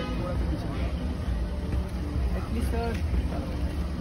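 Car engine idling close by, a low steady rumble, with voices calling out over it near the end.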